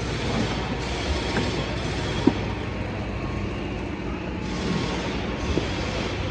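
Steady mechanical rumble with a hiss over it, with a single sharp knock about two seconds in and a lighter one near the end.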